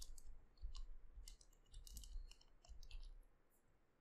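Faint clicking of a computer keyboard and mouse in a few short clusters, as code is copied and pasted into an editor.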